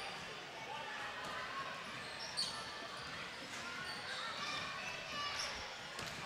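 A basketball bouncing on a hardwood gym floor during a free-throw routine, under faint crowd chatter echoing in the hall. A brief high squeak comes about two and a half seconds in.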